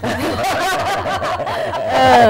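People laughing, several voices overlapping in steady laughter.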